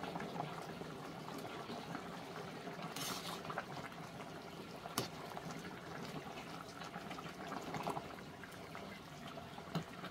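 A steel pot of thick jjajang sauce with pork and vegetables simmering on a gas burner while a ladle stirs through it, with steady soft bubbling and sloshing. A single sharp clink of the ladle against the pot about halfway through.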